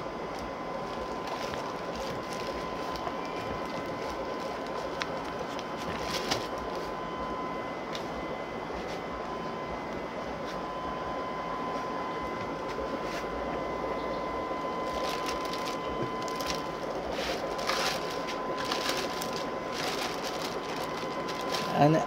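Steady machine hum with a thin, even whine running throughout. A plastic bag crinkles a few times as a dead fish in it is handled in a water-filled basin, mostly in the second half.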